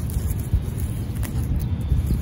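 Low, steady outdoor rumble of background noise.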